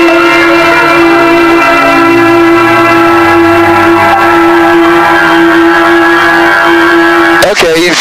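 The Citabria's four-cylinder Lycoming engine and propeller drone steadily, heard loud from inside the cockpit, and their pitch steps up at the start. A voice breaks in near the end.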